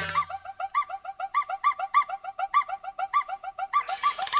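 A quick series of short, bird-like chirps, several a second, mostly alternating between two pitches, heard alone with no other instruments, as a lead-in to the next film song.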